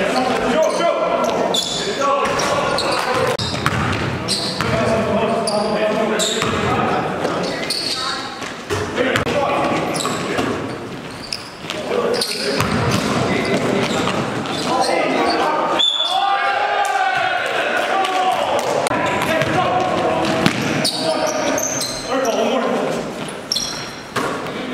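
A basketball bouncing repeatedly on a gym floor amid players' indistinct voices, echoing in a large gymnasium.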